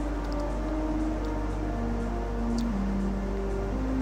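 Background music with slow, held notes that change every second or so.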